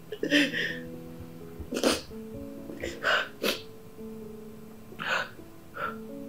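A woman crying, with about six short, sharp sniffs and sobbing breaths, over background music of slow held notes.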